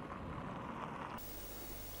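Faint, steady background hiss with no distinct events, dropping a little lower just past a second in.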